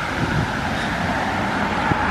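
Steady noise of car traffic going by on a road, with no single event standing out.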